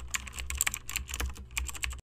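Typing sound effect: rapid, irregular key clicks accompanying text being typed out on screen, over a faint low hum, cutting off abruptly at the end.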